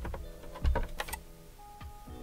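Hands working at the edges of an Xbox One S console's plastic shell to free the top cover, giving a few sharp plastic clicks and taps, the loudest a little over half a second in. Faint background music runs underneath.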